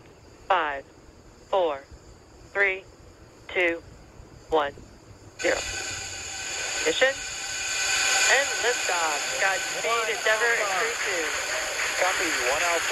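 Launch-webcast countdown calling the final seconds, one number a second. About five and a half seconds in, a sudden steady rushing roar of the Falcon 9 liftoff starts, with a crowd cheering and whooping over it.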